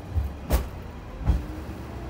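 Cabin sound of the Asa Seaside Railway DMV, a road-rail minibus, running on rails: a steady low engine and running rumble with two sharp knocks, the first about half a second in and the second under a second later.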